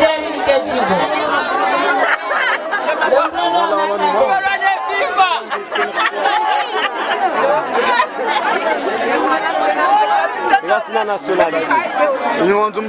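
A woman speaking into a microphone over a PA, with several other voices chattering at the same time.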